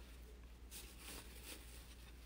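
Near silence: quiet room tone with a faint steady low hum.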